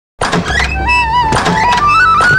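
Film background music starting abruptly: sharp percussive hits under a wavering, flute-like melody that steps up in pitch near the end.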